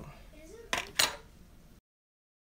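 Two sharp clinks of a metal dye pot being handled, about a quarter second apart, a little under a second in; the sound then cuts off abruptly.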